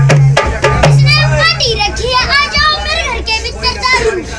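A dholak played with the hands, its bass head booming under sharp slaps, for about the first second and a half. A boy's high voice then sings over a few lighter drum strokes.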